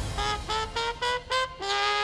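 Solo trumpet playing a rising run of five short notes, then a longer, lower held note near the end.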